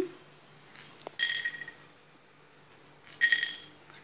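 Dried rajma (kidney) beans tipped from small plastic cups onto a plate, clinking and ringing as they land, in two short bursts: one about a second in and another about three seconds in.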